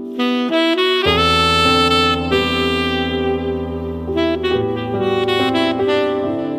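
Selmer Mark VI tenor saxophone with a Drake mouthpiece playing a melody of held notes. A sustained low accompaniment comes in underneath about a second in.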